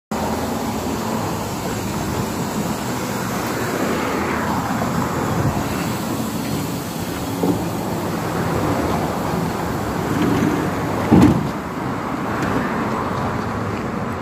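Steady street traffic noise, with one short thud about eleven seconds in.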